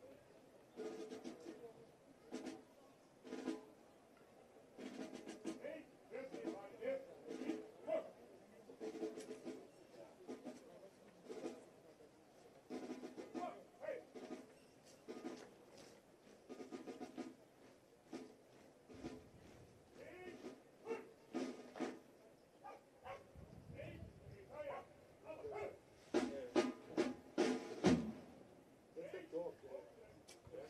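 Brass band with drums playing at a distance, with irregular sharp drum strokes that are loudest a few seconds before the end, mixed with people talking nearby.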